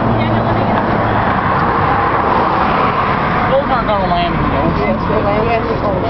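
Steady road traffic noise from cars on the highway. A low engine hum fades out about a second in, and people's voices are heard over the traffic in the second half.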